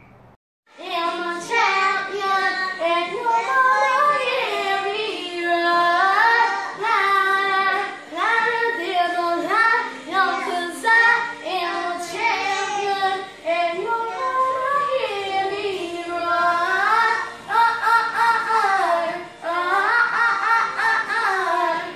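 A child singing a melody continuously, starting after a brief silent break about half a second in.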